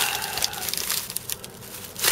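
Thin plastic shopping bag crinkling and rustling as a hand rummages through the candy boxes inside it: a quick irregular crackle that thins out and quietens over the last second.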